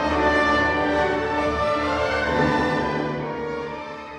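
Orchestral music: sustained chords over a low held bass, fading out near the end.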